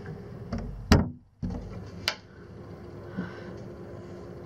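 Quiet room tone with a faint steady hum, broken by a few short sharp clicks. The loudest click comes about a second in and is followed by a brief drop to silence where two recordings are joined, and another click comes about two seconds in.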